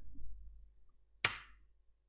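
A single sharp key press on a computer keyboard about a second in, over a faint low hum.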